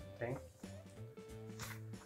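A folded paper user manual rustling as it is handled, with a short crisp rustle about one and a half seconds in. Faint background music plays underneath.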